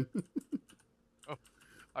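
A handful of short, sharp clicks, quick ones in the first moment and another a little after a second in, like typing on a keyboard, under faint bits of voice.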